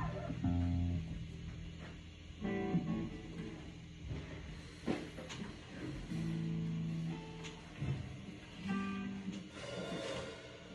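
Electric guitars through small amps playing loose, scattered notes and short chords: a few held notes or chords every two to three seconds with quieter gaps between. The players are noodling and checking their sound before starting a song.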